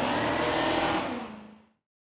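Supercharged V8 of a BMW E30 drift car running under throttle as it drifts, with tyre noise; the sound fades out about a second and a half in.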